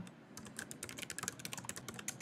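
Computer keyboard typing: a quick run of short, fairly quiet keystrokes, starting about a third of a second in.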